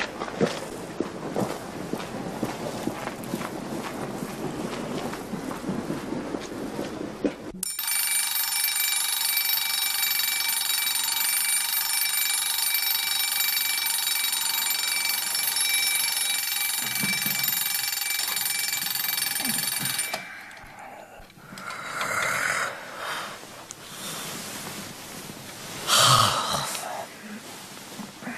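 A mechanical alarm clock's bell rings steadily for about twelve seconds and then cuts off suddenly. Before it there are several seconds of a steady crackly hiss, and after it softer, broken sounds.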